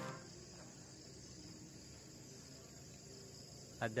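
Faint, steady chirring of crickets.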